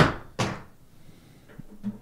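Two sharp knocks about half a second apart, then a few faint ticks near the end: hard plastic and a battery being jabbed and pried at in a small plastic holder close to the microphone.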